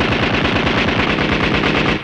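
Cartoon machine-gun sound effect: a hand-cranked, tripod-mounted gun firing a rapid, steady rattle of shots that cuts off abruptly.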